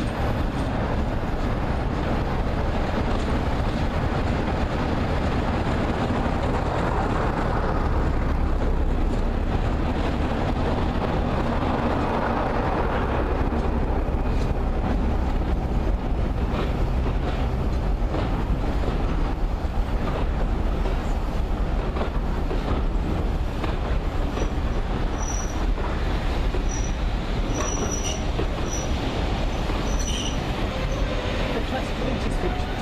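A diesel locomotive hauling a passenger train past close by: the engine runs under load, then the coaches roll by with a steady rumble and clatter of wheels over the rail joints. Faint high wheel squeals come in over the last few seconds.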